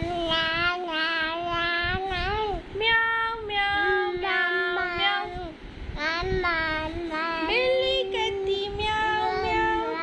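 A high-pitched voice singing a Hindi nursery rhyme about a cat, in short repeated "meow"-like notes that bend up and down.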